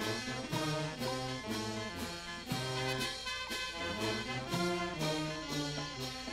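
Live brass band playing: trumpets, saxophones and tubas carry a melody over a bass line, with drums and cymbals keeping a steady beat.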